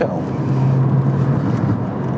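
BMW 130i's naturally aspirated 3-litre inline-six running at a steady cruise, heard from inside the cabin as a low drone over road and tyre noise; the drone swells briefly in the middle.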